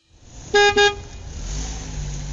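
Two short electronic horn beeps in quick succession from a kiddie bus ride's toy steering-wheel horn, followed by a steady low hum.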